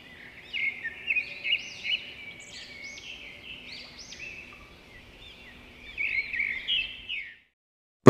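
Birds chirping: many quick, arching chirps and twitters, louder in the first second or two and again near the end.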